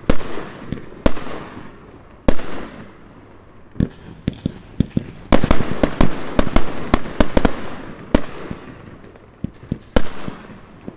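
Aerial fireworks bursting overhead: single bangs about a second apart, then a quick volley of bangs in the middle, each with a rolling echo that trails off.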